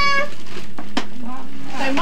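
A child's long, high, drawn-out vocal sound holding one pitch and ending a quarter second in, then a single sharp click about a second in, followed by soft voices.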